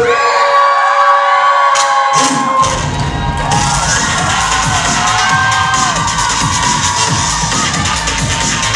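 Audience cheering and children shouting loudly. About two and a half seconds in, a bass-heavy dance beat starts up under the cheering.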